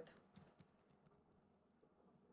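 Near silence: room tone, with a few faint, short clicks in the first second.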